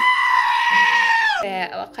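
A goat lets out one loud, long scream that holds steady for about a second and a half, then drops in pitch as it ends.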